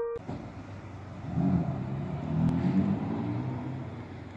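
A car going by on a city street, its engine sound rising for about two seconds through the middle and then fading, over steady street noise.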